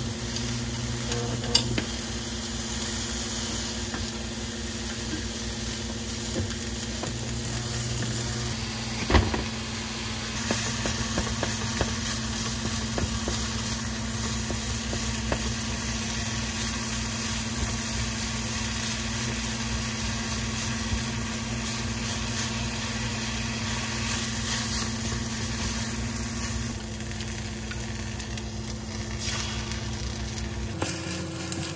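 Frying: sliced green onion and chikuwa sizzling in oil in a small pan, later with rice, stirred with a silicone spatula. A few sharp knocks sound over the sizzle, the loudest about nine seconds in.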